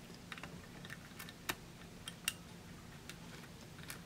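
Faint, scattered small clicks and taps of a screwdriver and wire end against a 3D-printer control board's screw terminal as a wire is fitted and tightened, the sharpest about one and a half and two and a quarter seconds in, over a low steady hum.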